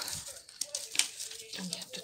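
Small paper receipts rustling and crinkling as they are handled, in a few short, sharp rustles, one about a second in and another at the end.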